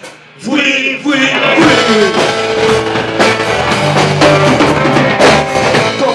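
Live rock band in a small club: after a brief drop near the start comes a sung line, then drums and electric guitar come in together and keep going with a steady beat.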